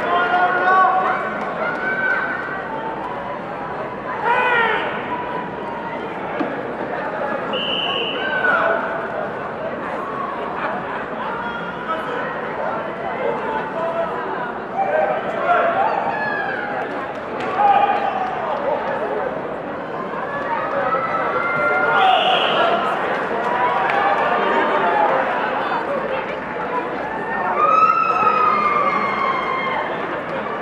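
Crowd of spectators in a large hall, many voices talking and calling out over one another at a steady level, with a few louder shouts standing out.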